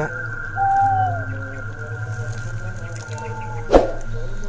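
Eerie electronic tones: a steady high tone held throughout, two short sliding tones that dip at their ends, over a steady low hum, with a sharp knock near the end.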